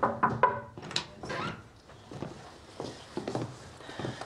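A door being opened with several knocks and thuds, most of them in the first second and a half, then quieter handling sounds.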